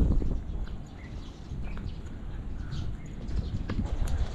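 Footsteps on stone paving, with a low rumble of wind on the microphone.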